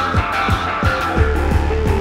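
Live jazz-rock band playing: drums on an even beat of about three strikes a second under sustained high chords, with a deep bass note and a melodic line coming in about a second in.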